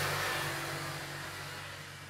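A low, steady hum with a hiss that slowly fades away.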